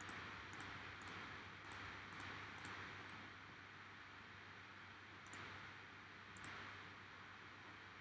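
Near silence over a low steady hiss, with faint computer-mouse clicks: about seven at half-second spacing in the first three seconds, then two more a few seconds later.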